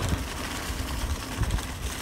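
Wind rumbling on the microphone over the noise of a mountain bike's tyres rolling fast along a leaf-covered dirt trail.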